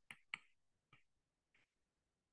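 A few faint, light taps of a stylus tip on a tablet's glass screen while handwriting figures, the first two a little louder than the rest.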